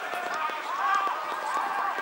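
Indistinct voices of people on a cricket field, with a few light knocks.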